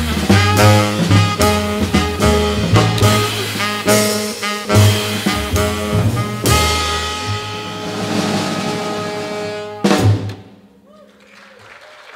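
Small jazz band of two saxophones, upright bass and drum kit playing live: busy lines with drums, then a long held closing note over cymbals, ended by a final hit about ten seconds in.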